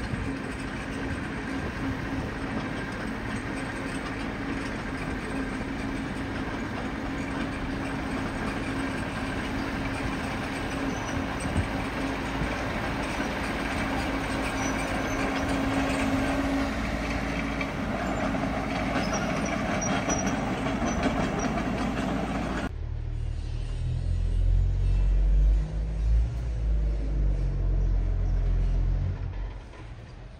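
Dump truck's diesel engine running steadily as its bed is raised and the load of dirt and rock slides off. In the last several seconds a deeper, louder low rumble takes over.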